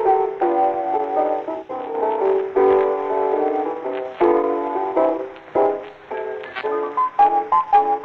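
Music from a 1920s blues record: held notes over an accompaniment, with a thin sound that cuts off above about 4 kHz, as on an old 78 record.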